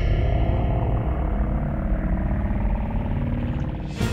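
Explosion rumble sound effect: a deep, heavy, steady rumble that eases slightly near the end.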